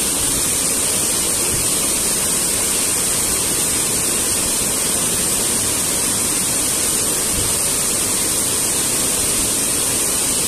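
Small waterfall and mountain stream rushing over rocks close by, a steady, unbroken roar of water.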